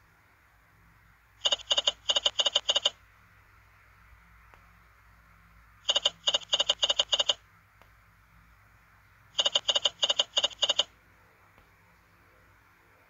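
Online slot machine game's reel-stop sounds: three spins, each a quick run of six to eight short pitched beeps as the reels stop, the runs about four seconds apart. All three are losing spins.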